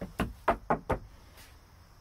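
About five quick, sharp knocks on wooden planks within the first second, inside a hollow cylindrical wooden structure.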